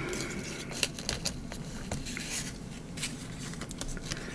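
Paper slips being handled on a tabletop: light rustling and a few short taps and clicks, most of them about a second in.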